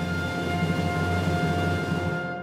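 Orchestral music holding one sustained closing chord over a low, rumbling drum roll.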